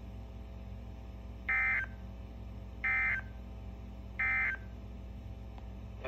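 Three short, buzzy digital tone bursts about 1.4 seconds apart, played through a Midland weather alert radio's speaker over a low hum. They are the NOAA Weather Radio SAME end-of-message data bursts that close the severe thunderstorm warning broadcast.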